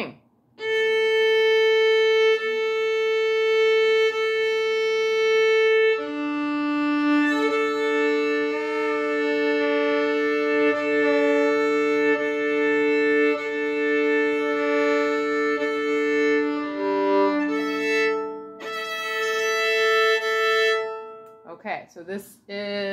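A violin being tuned on its open strings with long bowed notes: first the open A alone, then A and D sounded together as a fifth over several bow changes. Near the end it moves briefly to G with D, then to A with E.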